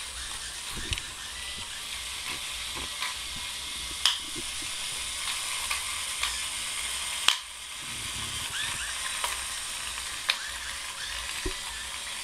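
Small plastic gearmotors of a two-wheeled robot whirring steadily as it drives over a tile floor, with scattered sharp clicks. About seven seconds in, a louder click and the whir briefly drops away before picking up again.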